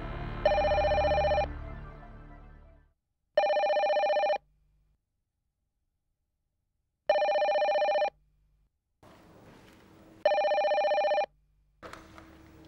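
Landline desk telephone ringing with a steady two-tone electronic ring: four rings, each about a second long, a few seconds apart. Background music fades out during the first ring.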